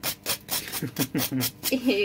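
A table knife scraping the charred surface off a slice of burnt toast in a quick series of short scraping strokes. Voices come in over it in the second half.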